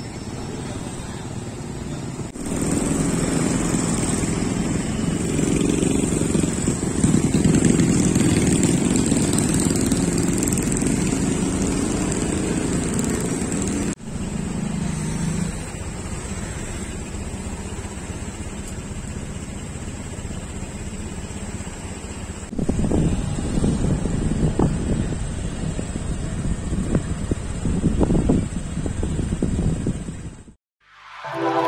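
Street traffic: motor scooters and cars running past in an urban street. The sound changes abruptly a couple of seconds in and again at about 14 and 22 seconds. The last part is rougher and uneven.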